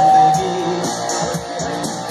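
Live band music with guitars leading a short instrumental gap between sung lines; a held note dies away within the first second, then plucked guitar notes carry on.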